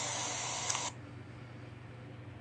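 Steady background hiss of a recording that cuts off suddenly about a second in, leaving only a faint low hum.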